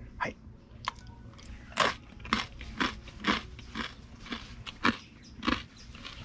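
A person chewing a mouthful of food close to the microphone, with sharp crunches about twice a second.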